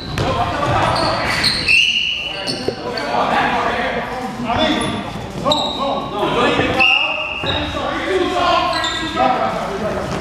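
A basketball being dribbled on a hard gym floor, with players' voices calling out over the echo of a large hall. Two short high squeaks come about two and seven seconds in.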